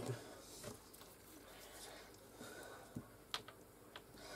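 Faint handling sounds of fingers pressing and kneading Fimo polymer clay into a flexible silicone mould, with a couple of soft clicks about three seconds in.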